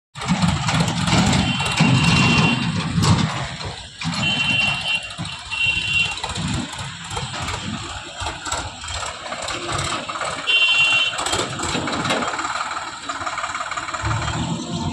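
JCB 3DX backhoe loader's diesel engine running as the backhoe arm digs soil, its level swelling and easing as the arm works.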